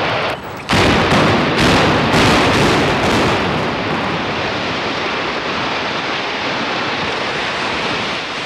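Building implosion: a quick string of sharp explosive blasts from the demolition charges, starting just under a second in and running for about three seconds, followed by a steady rush of noise as the six-storey steel-and-glass pavilion comes down.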